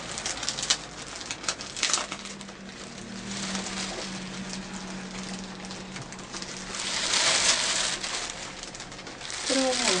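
Honeycomb tissue-paper ball decoration handled by hand, folded flat and opened out: crackling and rustling of the paper, with scattered crackles in the first two seconds and a louder rustling swell about seven seconds in.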